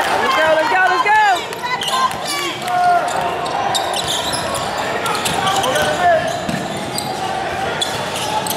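A basketball being dribbled on a hardwood gym floor, with short sneaker squeaks from players moving on the court and voices calling out.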